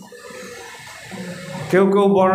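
A man's speaking voice: a pause of under two seconds with only faint background noise, then he resumes speaking loudly near the end.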